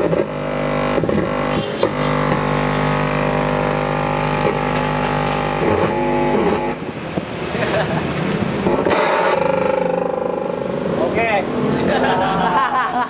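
Live noise music: dense layers of held electronic drones and feedback tones. About halfway through the texture shifts to wavering, sliding pitches, with glides near the end.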